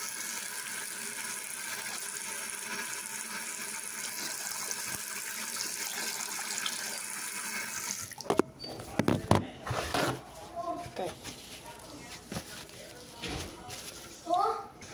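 Bathroom sink tap running in a steady stream, shut off about eight seconds in, followed by several knocks and bumps of handling.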